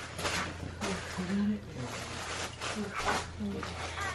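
Soft, wordless murmurs and hums from a quiet voice, a few short low sounds scattered through, with brief light splashes of water in the birth pool.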